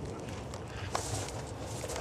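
Hand ratchet with a 5/16 socket backing out the bolts at the back of a 5.4 L Ford upper intake: light clicks and taps of the tool and bolt, with a small knock about a second in.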